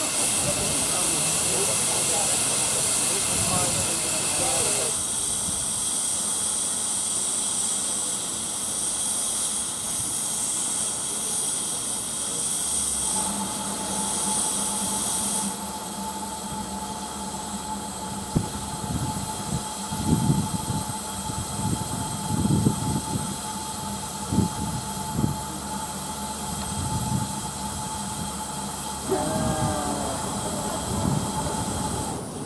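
Narrow-gauge steam locomotive standing with steam hissing loudly; the hiss drops away about halfway, leaving a steady hum with a few knocks.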